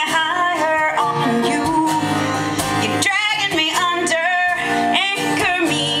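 A woman singing with her own acoustic guitar accompaniment, strummed steadily, some notes held with a slight waver.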